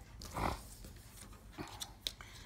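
Faint clicks of metal knitting needles being handled, a few near the end, with one short, low, muffled sound about half a second in.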